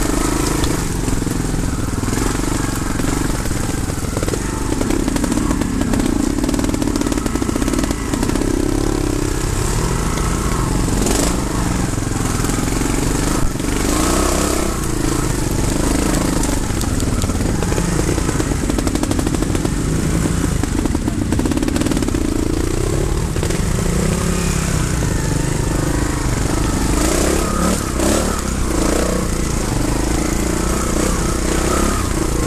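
Trials motorcycle engine heard close up from the bike itself, its pitch rising and falling again and again with the throttle as it picks its way up a rocky trail, with a few short knocks along the way.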